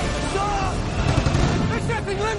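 Loud, dense low rumble of film action sound effects, with a voice coming in near the end.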